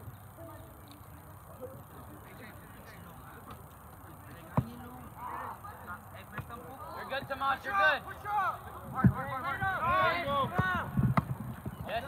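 Shouted calls from several voices, many short cries rising and falling in pitch, coming thick from about seven seconds in and getting louder toward the end. A single sharp thud comes before them, about four and a half seconds in.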